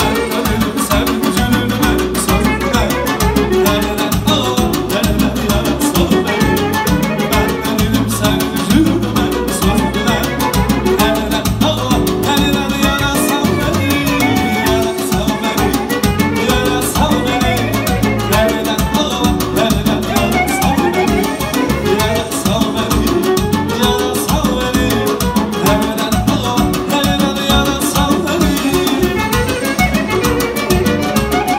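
Live Azerbaijani restaurant band: clarinet and violin play the melody over a keyboard's steady beat, with a man singing into a microphone.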